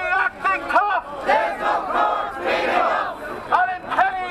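Crowd of protesters shouting a protest chant together, in a run of short shouted phrases with brief gaps between them.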